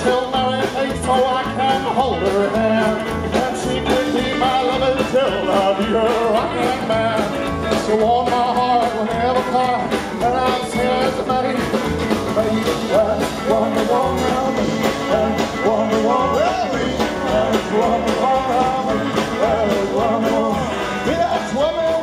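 Live rockabilly band playing: upright bass, drum kit, acoustic and electric guitars, with a steady driving beat and bending melodic lines over it.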